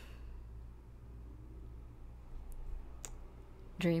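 A quiet pause with a steady low hum and a few faint, sharp clicks: one at the start and two more about two and a half and three seconds in. A woman's voice comes back just before the end.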